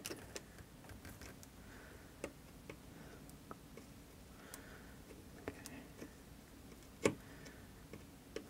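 Faint, irregularly spaced light clicks and ticks from soldering a feeder wire to a model railroad rail, with one louder click about seven seconds in.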